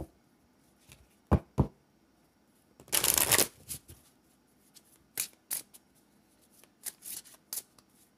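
A deck of oracle cards being shuffled and handled by hand: separate sharp card snaps, a dense half-second flurry of shuffling about three seconds in, then lighter scattered taps and flicks.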